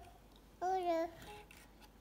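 A toddler's voice: one short, high-pitched babbled syllable about half a second in, lasting about half a second.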